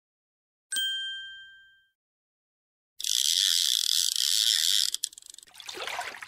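A single bell-like chime rings and fades over about a second: the signal to turn the page. After a pause comes a water sound effect, about two seconds of steady rushing hiss that stops suddenly, then a rougher splashing stretch near the end.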